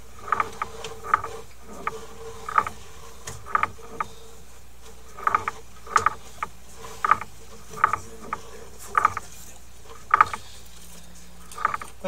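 Sewer inspection camera's push cable and reel being worked through the line, giving irregular short clacks, about one or two a second, over a steady low hum.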